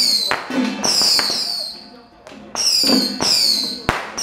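Ritual percussion: sharp strikes coming in groups, each followed by a high ring that falls in pitch, with a short pause in the middle, over chanting voices. Several hand-held frame drums are being beaten.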